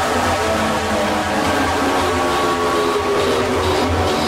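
Hard techno playing at a steady loudness: a dense, noisy passage over a pulsing low bass, with sustained synth tones.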